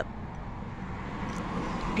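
Road traffic noise: a steady hum of passing cars, slowly growing louder as a car comes closer.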